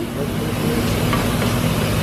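FS-Sugar ETL sugarcane juicer's two-horsepower electric motor and gearbox running with a steady hum just after switch-on, its rollers turning empty before any cane is fed in.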